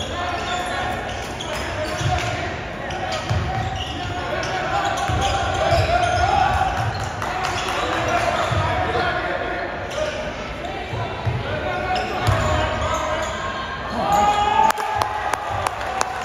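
Basketball being dribbled on a hardwood gym floor, a run of low thumps, under players' and spectators' voices echoing in a large gym.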